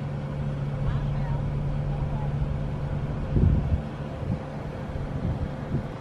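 Idling car engine heard from inside the cabin, a steady low hum, with a brief low thump about three and a half seconds in as the car door is opened.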